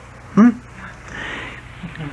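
A brief questioning 'hmm?' from a voice, then about half a second of soft breathy hiss, over the steady low hum of an old talk recording.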